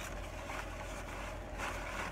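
Quiet, steady low rumble of a parked car's cabin, with a few faint handling sounds as shopping items are moved about.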